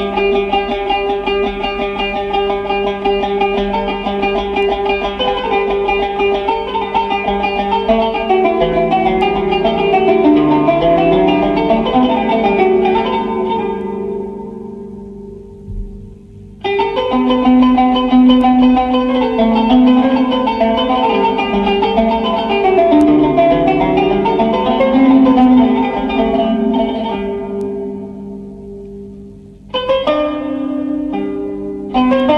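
Solo qanun (Arabic plucked zither) playing an improvised taqasim: runs of plucked notes ringing over sustained low strings. The phrase dies away to a short pause about halfway through, then a new phrase starts abruptly and fades again near the end.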